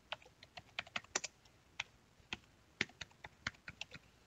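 Typing on a computer keyboard: a run of quick, uneven keystrokes with a short pause around the middle.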